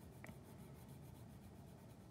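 Faint scratching of a wax crayon colouring back and forth on a sheet of paper on a table.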